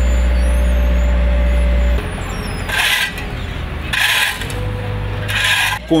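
Asphalt paver's diesel engine running steadily at a constant pitch. About two seconds in, the sound cuts to a quieter engine drone with three short hissing noises about a second and a half apart.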